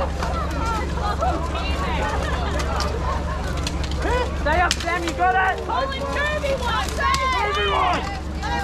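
Armored medieval melee: several voices shouting and yelling over the fight, with sharp clanks of steel weapons and plate armour striking now and then. A steady low hum runs underneath.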